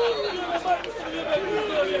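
Continuous speech: people talking, with overlapping chatter.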